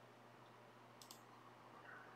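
Near silence with a low room hum and one faint computer-mouse click about a second in.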